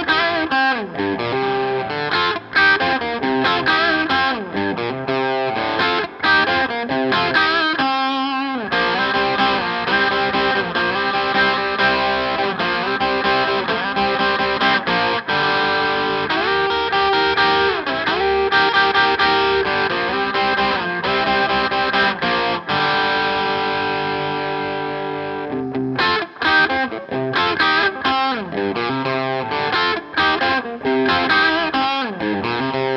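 Tom Anderson Bobcat Special electric guitar with P-90 pickups, played through a transparent overdrive into a Tweed amp: crunchy picked dyads and triads with a quick run about eight seconds in, then bent, ringing notes. A held chord fades out, and choppy picked chords start again near the end.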